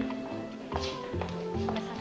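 Drama background music with long held notes, with a few taps or knocks over it.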